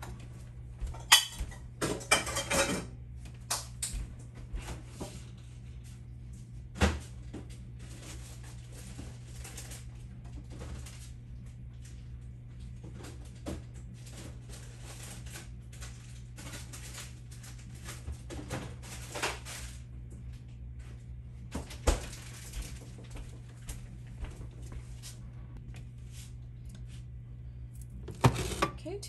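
A spoon scraping and tapping against a glass casserole dish of rice gumbo, with scattered sharp clinks; the loudest come about a second in, near 7 seconds and near 22 seconds. A steady low hum runs underneath.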